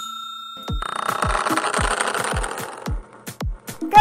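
A bell-like notification ding rings out and fades. About half a second in, electronic intro music starts with a steady kick-drum beat under a dense, jangly upper layer.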